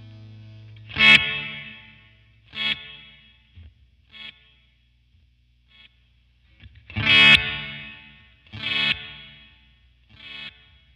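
Electric guitar (a Fender Stratocaster) strumming two chords through a Flamma FS03 digital delay pedal in its Low-bit mode. Each chord is followed by fading repeats about every second and a half.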